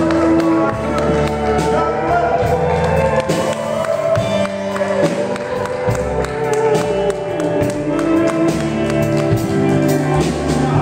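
Live country band playing an instrumental passage: a pedal steel guitar holds long notes that slide up and down in pitch, over electric guitar and a drum kit keeping a steady beat.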